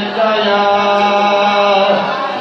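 Male voices chanting a Sindhi naat: a lead voice holds long notes with slow gliding turns over a steady low held note beneath.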